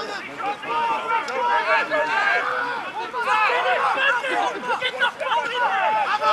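Several men's voices shouting and calling over one another, with no single voice clear, mixed with crowd chatter.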